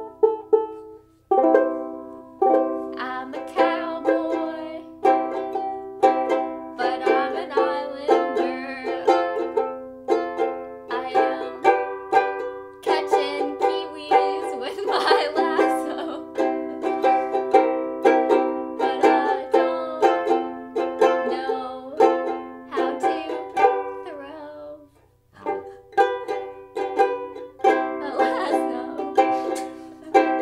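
Vangoa banjo ukulele played acoustically, chords and picked notes with a bright, twangy banjo-like tone. The playing breaks off briefly about a second in and again near the 25-second mark before resuming.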